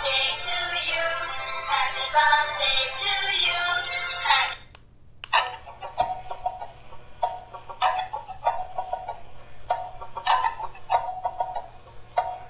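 A dancing cactus plush toy playing a song with synthetic singing through its small, tinny speaker. It stops briefly about five seconds in, then starts another, choppier tune of short repeated notes.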